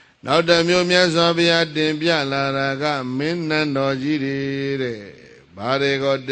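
A Buddhist monk's voice chanting a verse in long, held, melodic tones. It stops about five seconds in and resumes briefly near the end.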